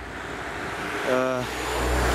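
A car passing close by on the road. Its tyre and engine noise grows louder toward the end.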